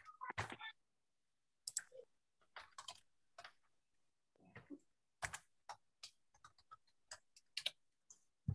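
Faint, irregular keystrokes on a computer keyboard, coming in short clusters with gaps between.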